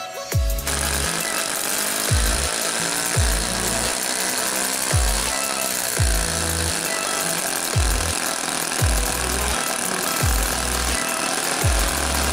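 Electronic dance music with a steady beat: a heavy kick drum about once a second over a deep bass line.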